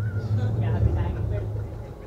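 Background voices talking over a strong low rumble, which eases off near the end.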